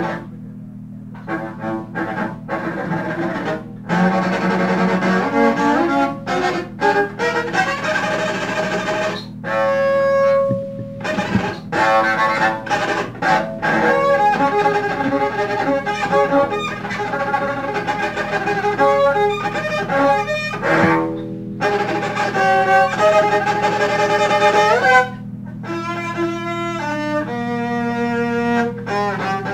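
Free-improvised jazz duet of double bass, bowed, and saxophone, in quick, shifting melodic lines over sustained low notes, with a few brief pauses.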